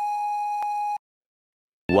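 A steady, high-pitched electronic tone, like a held beep, sounds for about a second and cuts off abruptly into dead silence. A voice begins just at the end.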